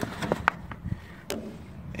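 A few light knocks and taps, about four of them in the first second and a half, as a hand handles parts under the hood, over a faint low hum.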